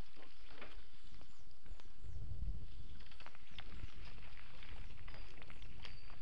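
Mountain bike riding over a dirt forest trail: tyre noise on the dirt with frequent short clicks and rattles from the bike over bumps, and a low rumble on the microphone that is strongest about two to three seconds in.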